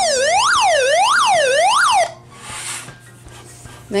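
Alert siren of a solar hand-crank weather radio: a harsh electronic tone sweeping up and down in pitch about one and a half times a second, cutting off suddenly about two seconds in. A soft rustle follows.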